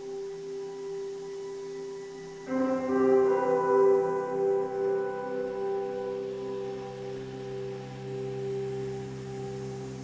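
Background music of sustained, ringing tones; a louder chord comes in about two and a half seconds in and slowly fades.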